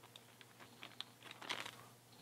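Faint crinkling and scattered light clicks of a thin clear plastic bag being handled, with a brief denser patch of crinkles about one and a half seconds in.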